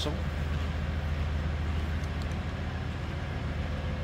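1996 Cadillac Fleetwood Brougham's 5.7-litre 350 V8 idling, a low, even exhaust note with nothing unusual in it.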